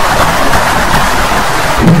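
Loud, harsh, distorted noise with no clear pitch, joined near the end by a steady low drone.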